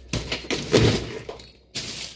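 Rustling of packaging with a soft thump, as groceries are handled and set down.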